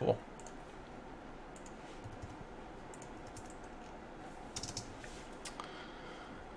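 Faint, scattered keystrokes and clicks on a computer keyboard, a few around the middle and a small cluster near the end, as a line of code is edited.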